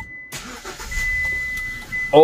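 Car engine being started: it starts up about a third of a second in and settles to a steady run. A thin, steady high-pitched tone sounds alongside.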